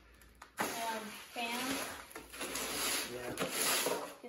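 Long-handled hoe scraping and turning wet, gritty fiber-reinforced concrete in a plastic mixing tub: a steady rough scraping that starts about half a second in.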